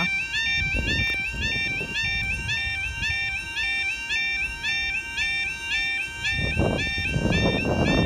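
Railway level crossing warning alarm sounding a continuous two-tone warble, repeating about twice a second, which signals that a train is approaching. A low rumble runs underneath, and a voice comes in near the end.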